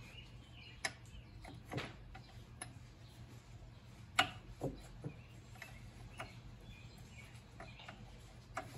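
A metal wrench clicking and tapping against carburetor mounting nuts while they are loosened: a handful of irregular sharp clicks, the loudest a little past four seconds in, over a low steady hum.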